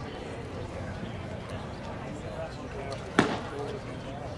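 A baseball pitch smacking into the catcher's leather mitt once, about three seconds in, over a steady background of spectator chatter.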